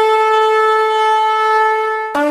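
A horn blown in one long, steady note.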